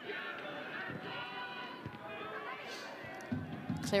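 Football stadium crowd noise: a steady wash of many voices from the stands, with faint sustained chanting.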